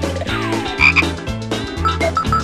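Cartoon theme music with a bouncy beat of deep, croak-like bass notes about twice a second, plus cartoon sound effects: a falling glide and two short high blips about a second in.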